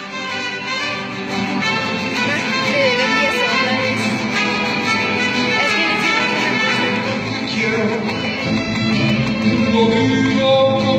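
Mariachi band playing live, violins and guitars together, growing louder over the first few seconds.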